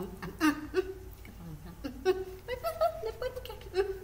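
Children's high-pitched voices talking and giggling, with no clear words, and a scattering of small clicks.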